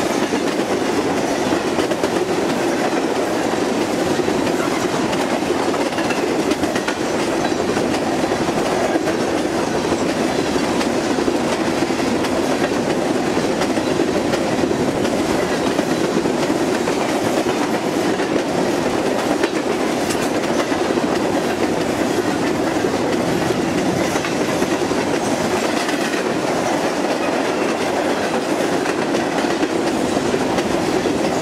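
Empty coal hopper cars of a freight train passing close by at about 48 mph: a steady rumble and rattle of wheels and car bodies, with a run of clicks over the rail joints.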